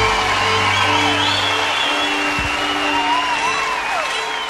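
A live country band's closing chord rings out, its bass dropping away about two seconds in, under a concert audience applauding and cheering with whistles and whoops.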